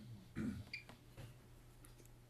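A hand handling and pressing the buttons of a handheld meter on a table: a short burst of rustle and knock about half a second in, then a few faint clicks, over a low steady hum.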